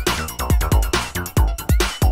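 Electronic dance music played from vinyl in a DJ mix: a drum-machine beat with a deep kick drum that drops in pitch, falling in an uneven, broken pattern rather than a straight four-to-the-floor, with crisp sharp hits and hats over it.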